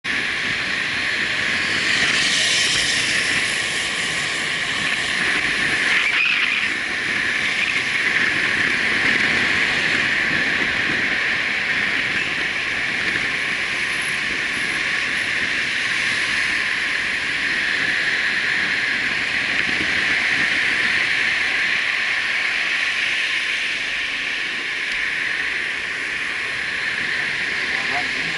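Steady rushing wind noise on a motorcycle rider's helmet camera while riding through traffic, with the bike and surrounding vehicles under it.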